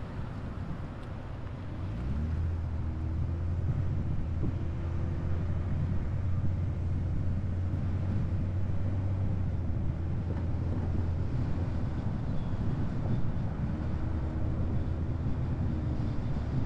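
Car driving: the engine note rises about two seconds in as it picks up speed, then settles into a steady low hum over road and wind noise.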